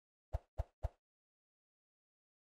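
Three quick computer mouse button clicks, about a quarter second apart, as menu items are selected.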